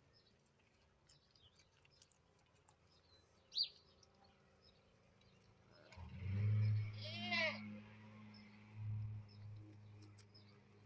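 A goat kid gives one short, quavering bleat about seven seconds in. A low hum sets in just before it and runs on, and a brief high chirp comes earlier.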